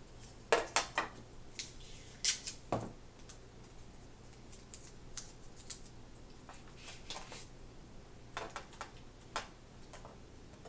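Short clicks, taps and knocks of a metal picture frame, its glass and painter's tape being handled and pressed down on a table, the loudest knocks about half a second and two seconds in, with softer taps later.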